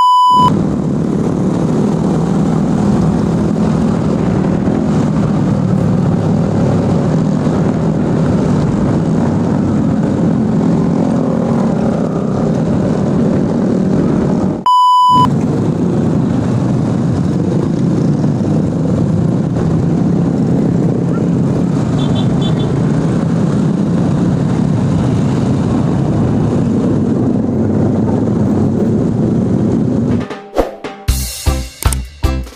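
Steady running noise of a group of motorcycles and scooters riding together on the road, heard from one of the moving bikes. It is broken twice by a short steady test-tone beep, once at the start and again about halfway through.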